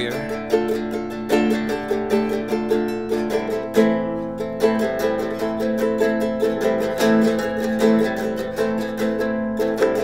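A guitalele played solo: a steady flow of plucked nylon-string notes with a low note ringing beneath them.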